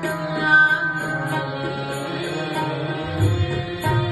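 Sikh shabad kirtan: a woman's voice singing a hymn over the held, reedy notes of a harmonium, with a few low tabla strokes in the second half.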